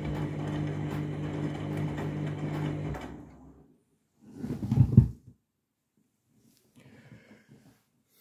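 Candy washing machine's drum motor running with a steady hum as wet bedding tumbles, then stopping about three seconds in. About a second later comes a short, loud low thump, followed by a few faint small noises.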